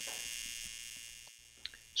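AC TIG welding arc on thin aluminum from a Lincoln Square Wave TIG 200, a steady high buzz that fades away over about a second and a half. A faint click comes just before the end.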